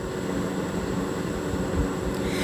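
Steady background room noise between spoken lines: a low, even rumble like an air conditioner or fan running, with a few soft low bumps.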